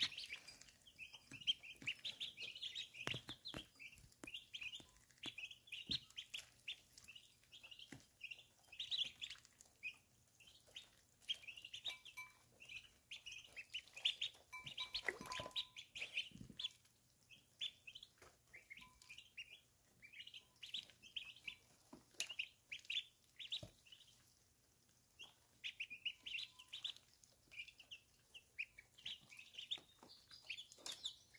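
Baby ducklings peeping: a steady stream of short, high peeps with a couple of brief lulls, and scattered soft clicks as they dabble in a glass water bowl.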